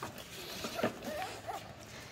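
Cavoodle puppies giving a few faint, short whimpers.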